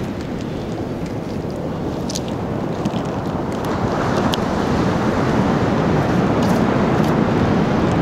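Steady rush of surf and wind on the microphone, swelling a little about halfway through, with a few faint clicks.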